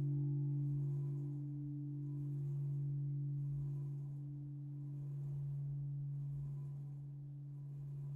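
Large bronze church bell swinging in its belfry frame, its deep hum and upper partials ringing on with no fresh clapper strike. The ring slowly fades and swells gently as the bell swings.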